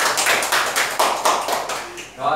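A small group of people clapping their hands, irregular and close, fading out near the end.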